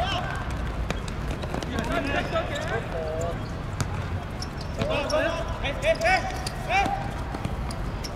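Footballers shouting to each other across an outdoor pitch, with the sharp thuds of the ball being kicked and bouncing on artificial turf now and then. A steady low rumble sits underneath.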